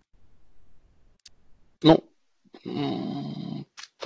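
A man's voice making non-word sounds. A short, sharp vocal sound comes about halfway through, and a drawn-out filler sound lasting about a second follows near the end.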